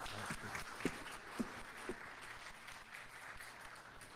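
Audience applauding, the clapping fading out gradually toward the end, with a few footsteps on the stage in the first couple of seconds.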